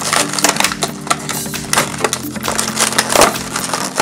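Clear plastic blister and cardboard toy packaging crackling and crinkling as it is pulled apart by hand, in quick irregular crackles.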